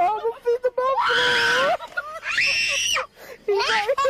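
A woman screaming and laughing: two long, high-pitched shrieks, the first about a second in and the second just after two seconds, with shorter bursts of laughing voice around them.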